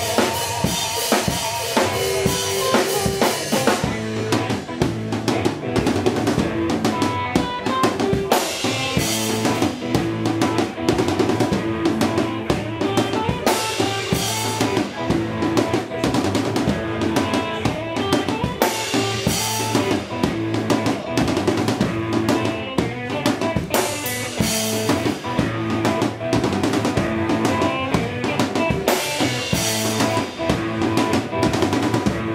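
Live hill-country juke-joint blues: a drum kit with kick, snare and rimshots beating a steady, driving groove under amplified electric guitar.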